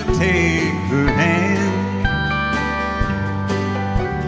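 Live country band music: electric guitar and band playing a ballad, with wavering, vibrato-laden melody lines in the first second or so and long held notes in the second half.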